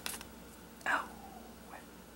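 A soft, breathy "oh" with a falling pitch about a second in, over quiet room tone.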